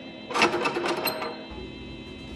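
A metal sliding door bolt is drawn back by hand on a wooden door, giving a short metallic clatter of several rapid clicks and rattles that lasts about a second. It is loudest at the start.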